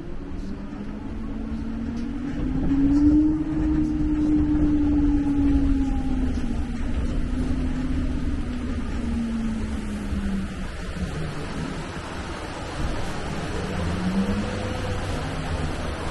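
Open-air Sabino Canyon Crawler tour tram running, with a steady low rumble and a whine that rises and falls in pitch, loudest a few seconds in.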